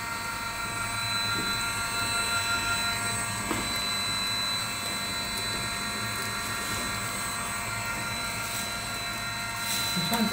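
A desktop single-screw plastic extruder running steadily, its motor and gearbox driving the screw with cooling fans going alongside. The sound is an even hum with several high, steady whines over it.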